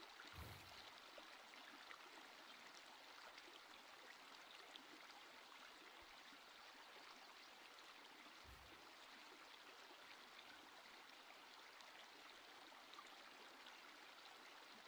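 Near silence: a faint, steady hiss of room tone or recording noise.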